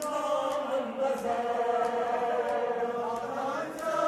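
A crowd of men chanting a mourning chant together, long held lines sliding up and down in unison, with faint sharp beats in a steady rhythm under it.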